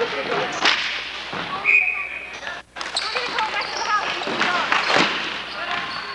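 Ball hockey play on an indoor court: several sharp cracks of sticks striking the ball and the ball hitting the boards, the loudest about five seconds in, with players calling out. The sound drops out for an instant about two and a half seconds in.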